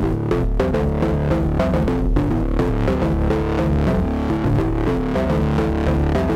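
A distorted bass-line riff played through Ableton's Roar saturator. Its very short feedback delay (about 27 ms) is being turned up, so a ringing tone tuned to one of the riff's notes grows over the bass line.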